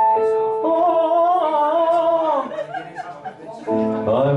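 Electric keyboard holding a chord, which drops out after about half a second; then a man's voice croons a wavering note that slides down and fades. Keyboard chords come back in near the end.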